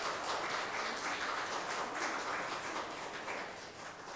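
Small audience applauding, a dense patter of many hands clapping that eases off slightly toward the end.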